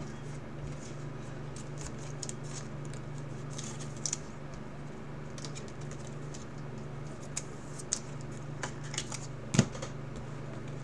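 Trading cards being flipped and slid through by hand: scattered light clicks and snaps of card stock, with one sharper click near the end, over a steady low hum.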